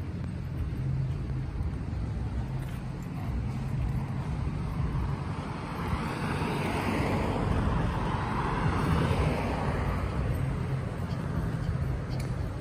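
Street traffic noise: a car passes by, its tyre and engine noise swelling about five seconds in and fading a few seconds later, over a steady low rumble.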